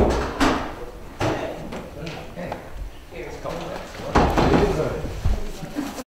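Indistinct conversation among several people, with a few sharp knocks and thumps, the loudest at the very start and another about four seconds in.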